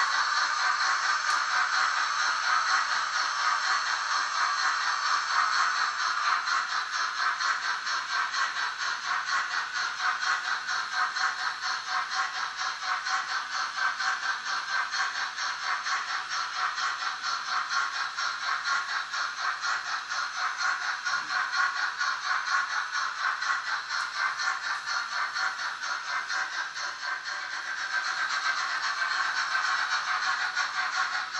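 Märklin H0 model trains running on the layout: a steady, fast, fine rattling clatter of wheels on metal track.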